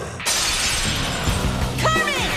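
A sudden shattering crash sound effect about a quarter second in, over the battle music, with a short pitched sweep near the end.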